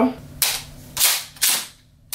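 Pump action of a JAG Arms Scattergun gas airsoft shotgun being worked by hand: three sharp clacks within about a second, the last two close together. The action cycles freely and sounds good.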